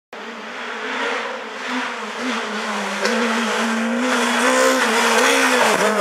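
Peugeot 306 Maxi rally car approaching at speed, its engine growing steadily louder, with a note that rises and falls with the throttle. A short drop in pitch comes just before it arrives.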